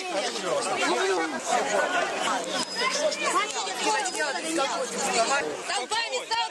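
Several people talking over one another in a crowd, their voices overlapping without pause.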